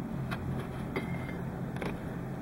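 Quiet room tone: a steady low hum, with a couple of faint clicks and a brief faint high tone about a second in.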